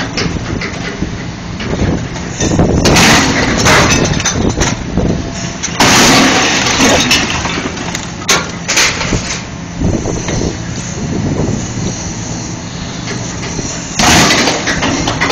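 Diesel engine of a scrap-yard excavator running steadily while its grapple presses down on a flattened car body, crushing the metal. There are three louder stretches of crunching, grinding sheet metal, about three, six and nine seconds in.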